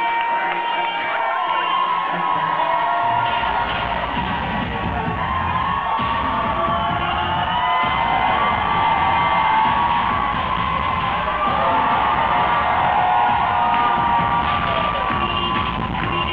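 Loud dance music playing through a hall's sound system, with a crowd cheering and whooping throughout. Deep bass comes in about three seconds in.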